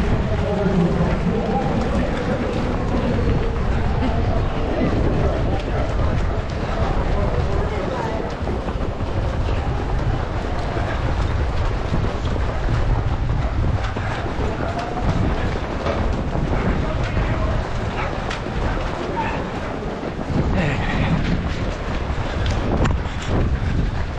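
Wind and motion rumble on a camera carried by a running runner, over the footsteps of a crowd of runners on pavement, with scattered voices.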